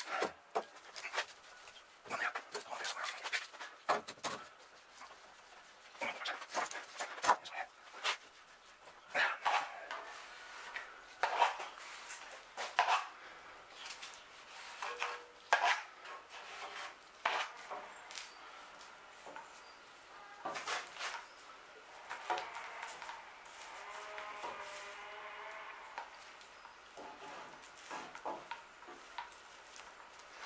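Steel F-clamps being set on epoxy-glued wooden mast staves: irregular knocks and clicks of clamp bars and jaws against the timber. Between them, gloved hands rub along the wood, wiping and spreading epoxy.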